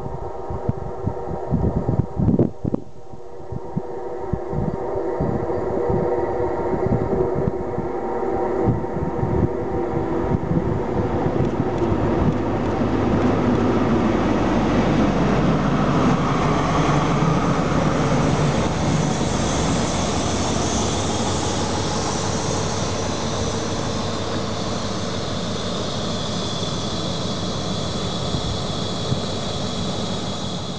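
Network Rail New Measurement Train, an HST with a Class 43 diesel power car leading, running into the station. The diesel engine's hum grows louder as the power car comes alongside, then the coaches roll past with a steady rumble that eases as the train slows. A steady high-pitched squeal runs through the last several seconds.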